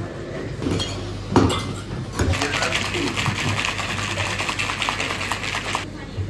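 Steel cocktail shaker shaken hard with ice: a fast, even rattle lasting about three and a half seconds that stops abruptly. A couple of sharp clinks come just before the rattle starts.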